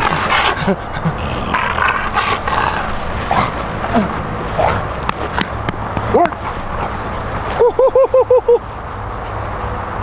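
Pit bull-type dog, worked up for bite work, whining and yipping in short excited cries, with a quick run of about seven yips near the end.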